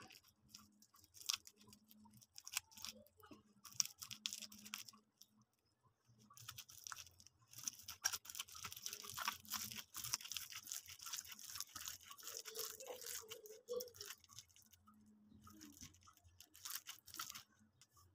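Food being worked by hand in the kitchen: irregular crunching, clicking and scraping, which becomes a dense, continuous scraping for several seconds in the middle.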